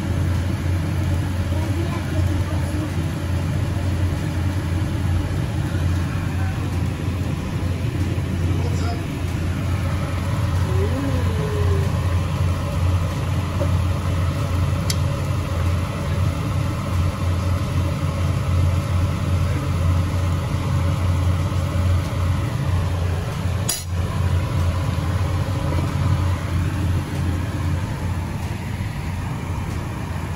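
A steady low hum runs under faint talking, with one sharp clink about three-quarters of the way through.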